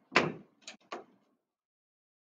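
Footfalls on a hard floor as a man steps down off a chair: a thud just after the start, then two lighter taps within the first second.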